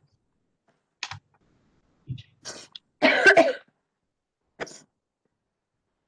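A person clearing their throat and coughing in a few short separate bursts, the loudest and longest about three seconds in.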